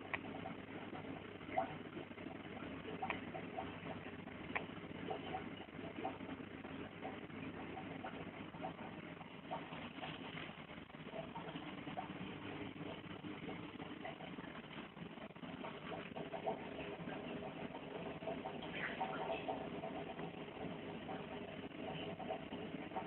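Steady background hubbub with faint distant voices and a few scattered clicks.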